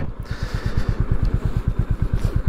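Royal Enfield Meteor 350's 349cc air-cooled single-cylinder engine running under way, its exhaust giving a rapid, even train of low thumps.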